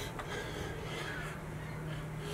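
Hard, forceful breathing of a man doing squats under a heavy load, about one breath a second, over a steady low hum.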